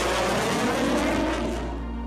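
Jet engine noise from an F-35 fighter flying past: a steady rushing sound that fades away near the end, over a low background music bed.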